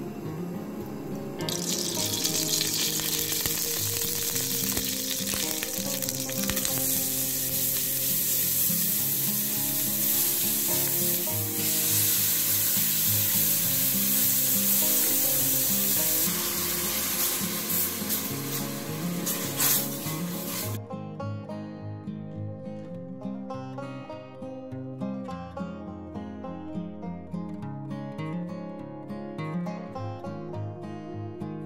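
Grated onion frying in hot olive oil in a pan, a steady sizzle over background music. The sizzle cuts off suddenly about two-thirds of the way through, leaving only the music.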